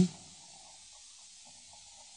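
Faint steady hiss of an old radio broadcast recording in a pause between lines; the last word of a voice cuts off at the very start.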